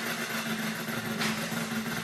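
Tabletop prize wheel spinning fast, its pointer flapper rattling over the pegs in a steady, even buzz.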